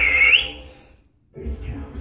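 Eerie background music with a high, wavering whistle-like melody over a low drone. It fades out to silence about a second in and comes back faintly just after.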